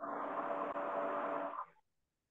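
A steady rushing noise with a faint low hum through it, lasting under two seconds and switching on and off abruptly, as when a video-call microphone opens onto a participant's room.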